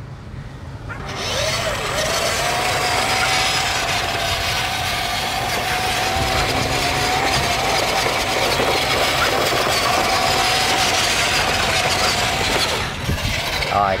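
Remote-control toy dump truck driving across sandy dirt: its small electric drive motor and gearbox give a steady whine. The whine starts about a second in and stops shortly before the end.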